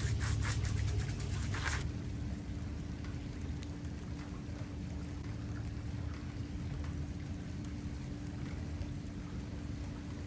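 Water spraying hard from a garden hose, cut off suddenly about two seconds in. It is followed by a softer steady wash of water noise with scattered small drips and a steady low hum.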